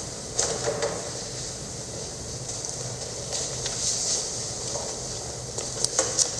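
Soft rustles and light knocks of paper sheets being handled at a metal music stand, over a steady hiss.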